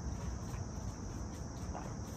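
Crickets chirping in a steady high drone, over a faint low background rumble.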